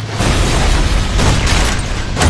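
Film sound effect of an explosion: a loud, deep, rumbling blast.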